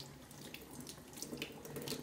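Kitchen tap running into a stainless steel sink, the water splashing over a rock held under the stream.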